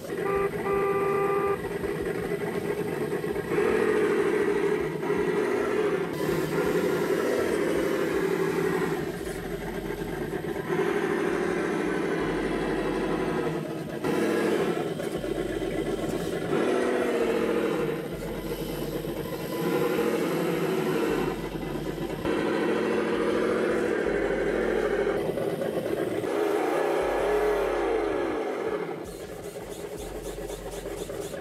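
V8 engine sound revving up and down, broken into short stretches that change abruptly every couple of seconds.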